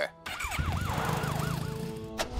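Emergency-vehicle siren sweeping quickly up and down, about six sweeps, over a low engine rumble as the vehicle sets off.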